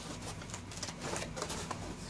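Packing foam and kit parts being handled: soft rubbing of foam with irregular small clicks and taps as pieces are moved in the foam tray.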